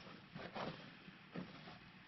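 Faint rustling of dry shredded-paper bedding in a worm bin being moved by hand, in a few soft, short handfuls.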